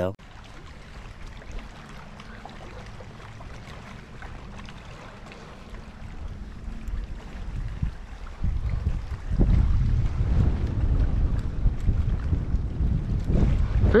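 Wind buffeting the microphone: faint at first, then a strong, gusting low rumble from about eight seconds in.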